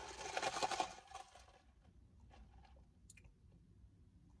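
Ice rattling in a plastic cup of iced coffee as a straw stirs the drink. The rattle is dense for about the first second and a half, then thins to a few faint clicks.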